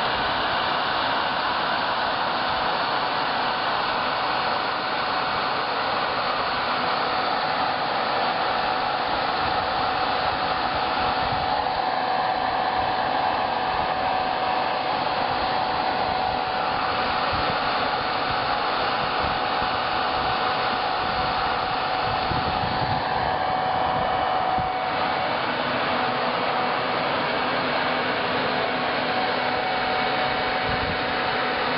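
Hovercraft's electric lift blower running steadily at high power: a loud rush of air with one steady high whine, the fan inflating the skirt to hover on short grass.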